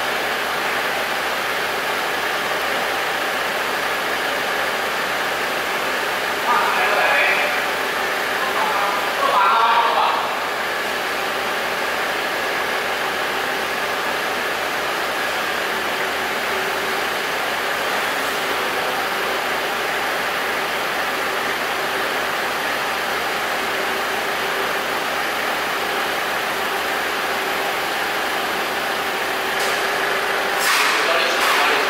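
Steady mechanical hum with a few faint steady tones in it. Brief voices break in about seven and ten seconds in.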